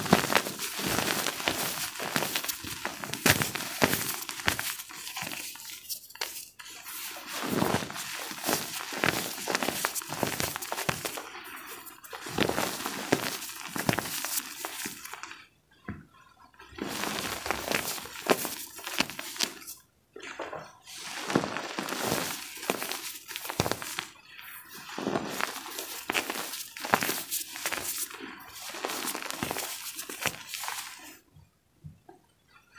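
Gym chalk blocks coated in calcium carbonate powder being squeezed and crumbled by hand: a dense run of soft crunches and crackles, with short pauses a little past halfway and again about two-thirds through.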